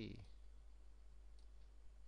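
Near silence with a couple of faint computer-mouse clicks about a second and a half in, over a steady low hum.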